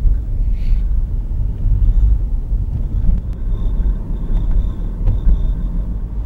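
Steady low rumble of a car driving over rough, patched pavement, heard from inside the cabin: tyre and road noise with small uneven bumps in loudness.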